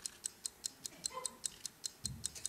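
Stopwatch ticking sound effect: fast, even, light ticks at about five a second.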